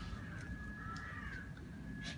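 A faint drawn-out animal call about a second in, over low background noise and a steady thin high tone.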